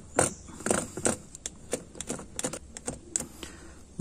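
A pen scratching along a rubber floor mat, tracing a cut line, with irregular small clicks and short scraping strokes.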